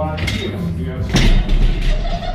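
A loaded barbell with bumper plates drops onto the lifting platform about a second in after a failed 72 kg jerk, a heavy thud followed by a low rumble as it settles. A brief voice sounds at the very start.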